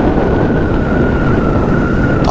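Suzuki Gixxer SF motorcycle ridden at road speed, heard from a camera on the bike: engine and road noise with wind rushing over the microphone. A steady high whine runs through it.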